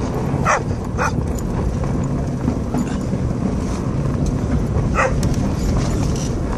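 A dalmatian barking three short times, twice in quick succession near the start and once near the end, over the steady low rumble of a slowly moving car.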